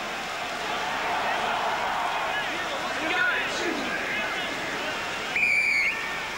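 Stadium crowd noise with a few scattered shouts during a rugby scrum. Near the end the referee's whistle blows once, a short steady note, for an infringement at the scrum: the scrum has wheeled and a free kick is given.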